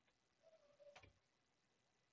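Near silence, with one faint mouse click about halfway through, just after a brief faint tone.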